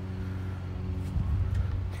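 Steady low mechanical hum of a running motor, with no sudden sounds.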